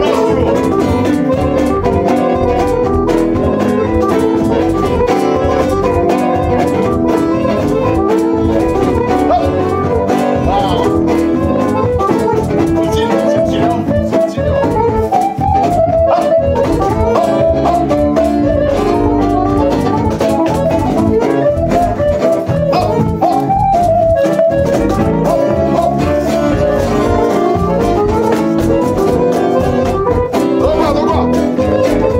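Live acoustic band playing a lively Romanian hora tune, with an acoustic guitar strummed prominently throughout.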